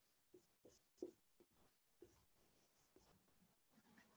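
Very faint writing: short pen or marker strokes at irregular intervals.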